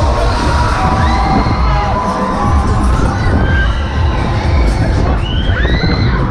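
Riders on a spinning Break Dance ride screaming and shouting, with several rising-and-falling shrieks, the loudest near the end, over a steady low rumble.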